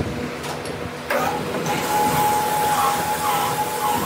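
A workshop machine running with a steady mechanical din. About a second in there is a knock, the noise grows louder, and a steady high whine sets in.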